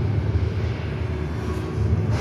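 A low, steady rumble from a projection show's soundtrack, played through the hall's loudspeakers while fire and smoke fill the screen.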